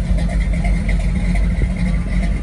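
1978 Ford Bronco's 400 cubic-inch V8 with mild cam idling through dual Flowmaster exhausts, a steady low rumble.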